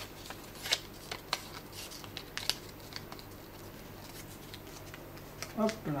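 A small sheet of paper being folded and handled: light, scattered rustles and ticks, mostly in the first three seconds.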